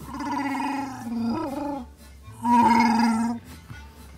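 Two Chewbacca-style Wookiee roars voiced by a person: a long one with a wavering pitch, then a shorter, louder, steadier one a little after halfway. Background music plays underneath.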